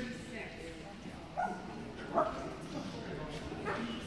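A dog giving a few short, sharp barks or yips, the loudest about two seconds in, over the low chatter of people in a large hall.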